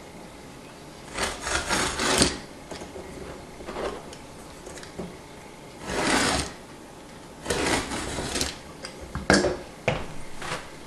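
Several short bursts of scraping and rubbing, each lasting about half a second to a second, with a sharp knock near the end.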